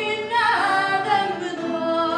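A woman singing fado, holding long wavering notes, with a sliding drop in pitch about half a second in.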